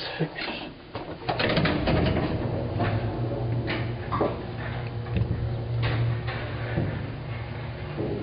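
Elevator car running up its shaft: a steady low hum with scattered clicks and rattles.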